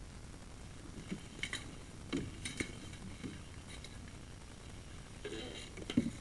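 Irregular light clicks and knocks from a sewer inspection camera head and its push cable being pulled back out through the cleanout pipe, several in the middle and a short cluster near the end.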